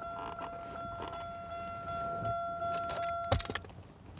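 A car's electronic warning chime sounding as a steady, faintly pulsing tone, cut off about three and a half seconds in by a brief jingle of keys.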